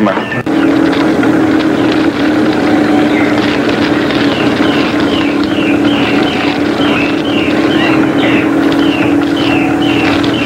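Steady engine drone of a bulldozer clearing forest, with a short high falling squeak repeating about twice a second, heard from an old film soundtrack played over a hall's loudspeakers.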